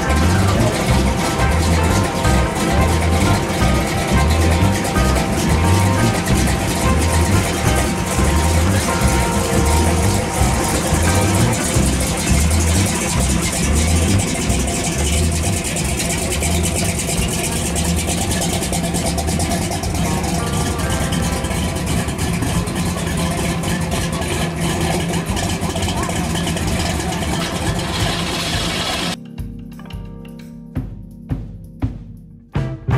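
A hot-rodded S-10 Blazer's engine idling and creeping along with a low, loping beat, mixed with music and people's voices. Near the end the sound cuts to music alone.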